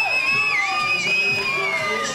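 Spectators cheering in a large, echoing indoor pool hall, with one long, wavering high note held over the crowd that sinks slightly in pitch near the end.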